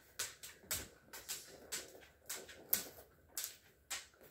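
Cardboard microphone box being handled, with about a dozen light, irregular clicks and taps as fingers and fingernails grip and tap the box.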